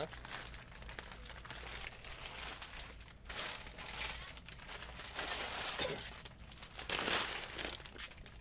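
Plastic candy bag crinkling as it is handled and carried, in uneven bouts of rustling, loudest about seven seconds in.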